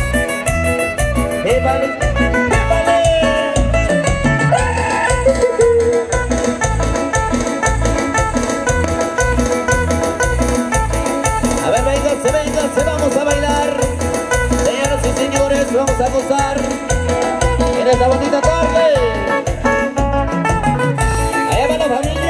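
An amplified band playing Latin dance music, with a steady bass beat under a melody.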